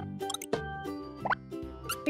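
Light children's cartoon background music with plop-like sound effects and one short rising squeak a little past halfway.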